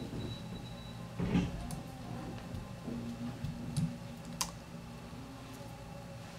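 Faint handling noises at a fly-tying vise: a few light clicks and taps as fingers work at the vise jaws and the fly, with one sharper click about four seconds in.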